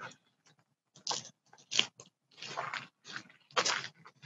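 Footsteps on a gravel garden path, about six uneven steps, heard through a phone's microphone.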